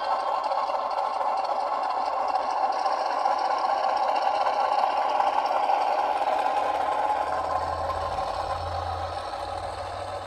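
Model ALCO PA diesel locomotive's onboard sound system playing a running diesel engine as the model moves along the track, growing quieter over the last few seconds.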